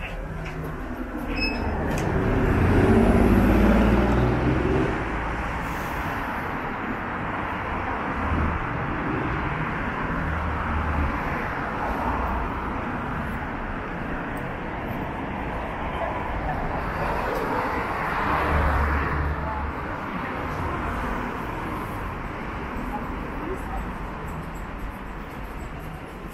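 City street ambience: steady traffic noise with the indistinct chatter of passers-by. A vehicle passes louder a few seconds in.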